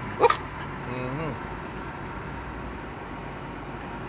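Small dog giving one sharp yip just after the start, over the steady low hum of a car interior.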